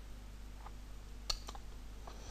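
A sharp single click a little past halfway, with a couple of fainter ticks around it, over a low steady hum.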